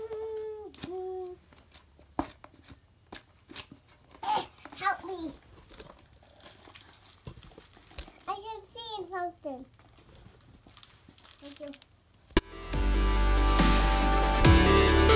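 A small child babbling three times, with scattered clicks and crinkling from handling a box. About twelve seconds in, a loud dubstep-style electronic music track starts abruptly.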